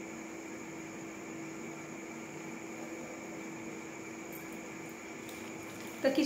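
Steady room tone: an even hiss with a faint, constant low hum, and no other events.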